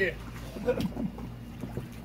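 A man laughing in short bursts, with water sloshing around a person struggling on an inflatable pool float.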